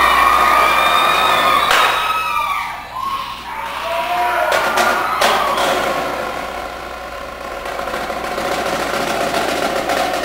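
Audience cheering and whistling, dying away about three seconds in; then separate strokes on a marching snare drum, coming thicker near the end.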